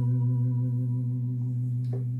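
A single note held on a Roland E-09 arranger keyboard, the F-sharp taken as the starting key for transposing: one steady low tone with overtones, slowly fading.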